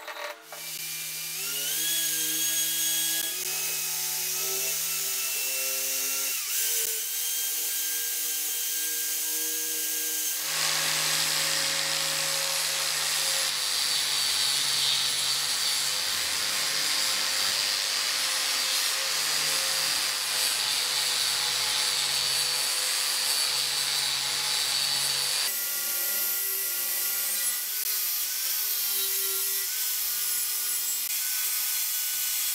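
Electric angle grinder with a flap disc grinding down welds on steel brackets. The motor's steady whine rises in pitch as it spins up early on, and a harsher grinding noise fills the middle stretch.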